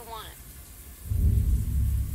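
A deep, low rumble comes in suddenly about a second in and keeps going, a dark boom-like swell in a horror film's soundtrack.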